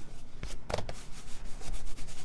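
Hands rubbing and pressing a cardstock and vellum panel against a craft mat, a dry scuffing of skin and paper with a couple of short ticks of the paper being handled.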